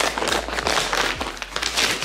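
Paper packaging being torn open and rustled by hand: a run of crisp tearing and crinkling strokes as the box's seal and a brown paper bag are pulled open.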